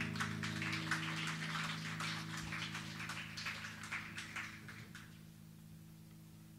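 The last strummed chord of an acoustic guitar ringing on and slowly fading away. Over it comes a light patter of small clicks and rustling that stops about five seconds in.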